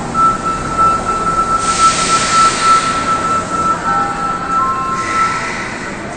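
A steady electronic departure signal tone, held for about five and a half seconds, with a hiss starting about one and a half seconds in and lasting about three seconds. A few shorter tones come in near the end.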